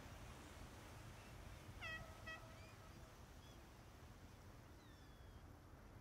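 Gull calling over a faint low wash of surf: a burst of mewing cries about two seconds in, the first dropping in pitch and then holding, then a thin falling call near the end.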